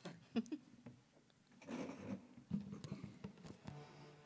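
Quiet room with scattered light clicks and knocks and a brief soft rustle about two seconds in: performers shifting and handling their instruments and gear before playing.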